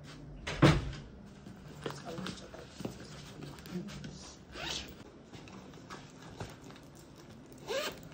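A handbag zipper being pulled open in short scraping strokes, among rustling and handling noises. A single sharp knock a little over half a second in is the loudest sound.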